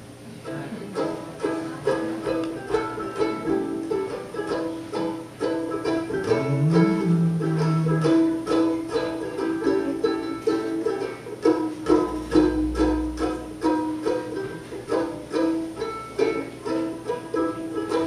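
A roughly ninety-year-old banjo ukulele played solo as the instrumental opening of a song: chords strummed and picked in a steady rhythm.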